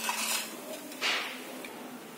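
Steel kitchenware being handled: a small steel plate of roasted chopped almonds moved over a steel kadhai, with a light clatter at the start and a short rattling swish about a second in.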